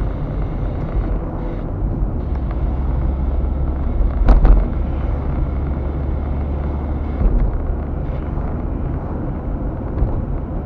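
Car driving along a road, heard from inside the cabin: a steady low engine and tyre drone. A sharp thump about four and a half seconds in is the loudest sound, and a smaller bump follows about three seconds later.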